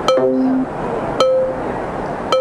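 Interactive Metronome computer-generated beat: short chime-like electronic tones, about one a second, each starting sharply. The first is joined by a lower tone held for about half a second.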